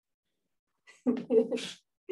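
A person's short vocal outburst about a second in: two quick voiced bursts and then a breathy one.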